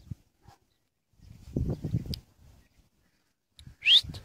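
Puppies playing: low, scuffling rumbles, then a short, high squeak rising in pitch just before the end, the loudest sound.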